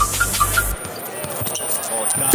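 Basketball dribbling on a hardwood court with arena noise, over a hip-hop beat whose bass drops out about a second in.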